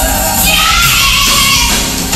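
Live gospel performance: a female vocal group singing with an electric bass and drum band backing, one voice holding a high note through the middle.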